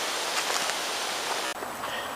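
Steady, even outdoor hiss with no clear single source. It drops abruptly in its upper range about one and a half seconds in, where the recording cuts.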